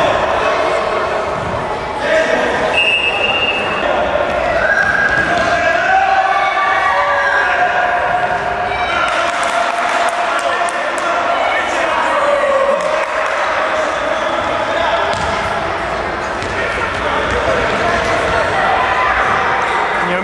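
Futsal players and a coach shouting indistinctly in an echoing sports hall. The ball is kicked and bounces on the hard court floor, with sharp thuds.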